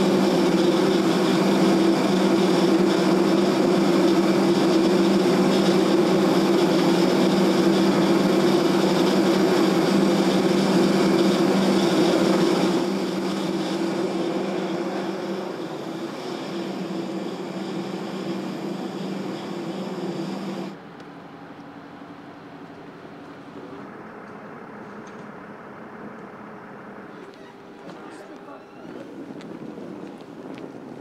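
Steady turbine hum and whine of a parked jet airliner, loud for about 13 seconds, then fading and cut off about 21 seconds in, leaving a quieter outdoor background.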